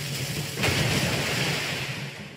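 Sound-effect rush of water blasted out of a barrel: a loud, dense hiss that surges suddenly about half a second in and then slowly eases off, over a low drone.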